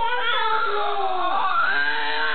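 Baby vocalizing into a glass cup held at his mouth: one drawn-out pitched wail that slides down in pitch and rises again near the end.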